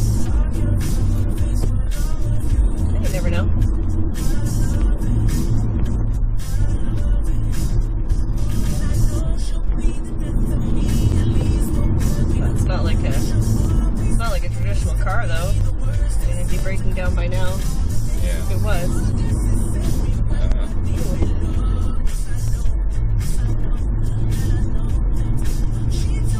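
Steady low road and tyre rumble inside the cabin of a 2011 Chevrolet Volt cruising on battery power, with music playing over it.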